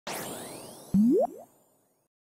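Logo sting sound effect: a shimmering swish that fades away, then about a second in a short springy boing that slides upward in pitch, followed by a softer second upward slide.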